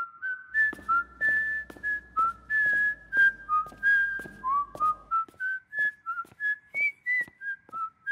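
A person whistling a carefree tune: a quick string of clear notes hopping up and down, with faint light taps under it.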